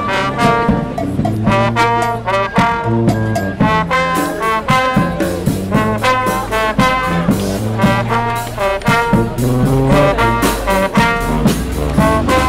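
Brass band (fanfare) playing a lively tune: trombones and trumpets over a low bass line, with regular drum strikes.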